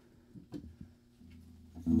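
Electric archtop guitar: a low note rings quietly from just over a second in, then louder plucked notes near the end.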